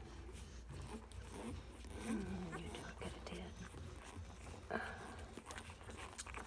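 Faint grunts and whimpers from one-day-old bullmastiff puppies nursing on their mother, with one short falling whine about two seconds in.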